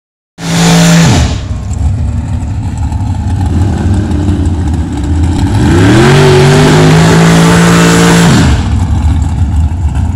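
Drag racing car engines at the strip. A loud rev is cut off about a second in, over a low rumble of engines. About five and a half seconds in, an engine revs up, holds high revs for about two and a half seconds, then drops off.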